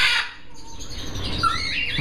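Parrot calls: a loud squawk at the very start, then a few shorter whistling calls that glide up and down near the end.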